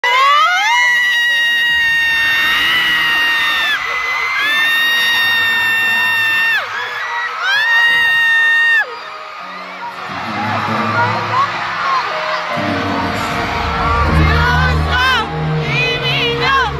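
Concert crowd of fans cheering, with three long, high, held screams in the first nine seconds, each starting on a rising glide. About ten seconds in, the band's intro music starts with a low bass swelling under it, while fans keep cheering with short shrieks.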